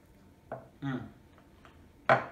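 A man hums 'mm' in enjoyment with his mouth full as he eats a dumpling, a short sound about half a second in and the 'mm' just after; otherwise a quiet room.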